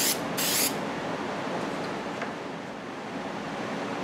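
3M Super 77 spray adhesive hissing from its aerosol can: one burst ends right at the start and a second short burst comes about half a second in. After it there is only a steady low background hiss.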